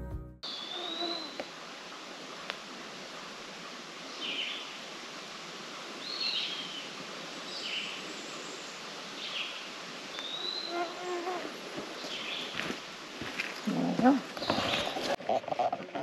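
Woodland songbirds singing, identified as eastern wood-pewee, red-eyed vireo and Philadelphia vireo. Short high whistled phrases repeat every second or two, with a longer slurred whistle near the start and again about ten seconds in.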